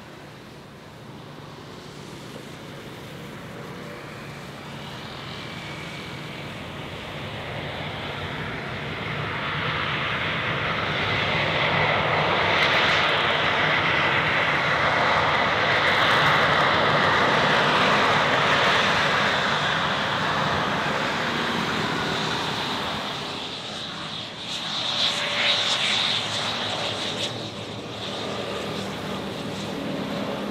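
Twin GE CF34 turbofan engines of a Comac ARJ21-700 jet rolling out after landing on a wet runway. The engine and rollout noise grows louder as the jet comes nearer, is loudest around the middle, then fades.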